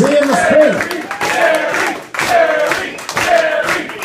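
Small audience talking and calling out over scattered clapping after a song ends.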